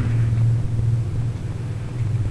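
A steady low background hum, with no other distinct sound.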